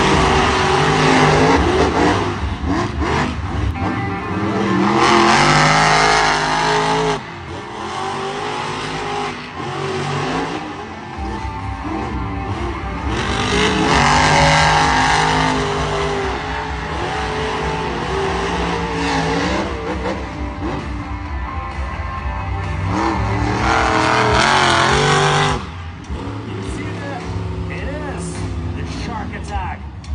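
Monster truck engines revving and running as the trucks drive the dirt arena. The sound rises and falls, with several loud surges a few seconds long.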